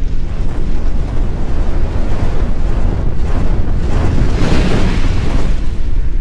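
Loud rumbling, whooshing sound effect for an animated logo, in the manner of fire or a blast, swelling in waves several times.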